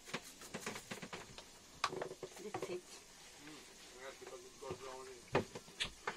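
Quiet, faint talk with a few light clicks and taps in between.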